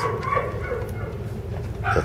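Dogs barking in the background, fainter than the trainer's voice around it: kennel dogs in the nearby boarding rooms.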